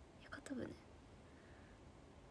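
A woman's brief, soft murmur about half a second in, then near-silent room tone.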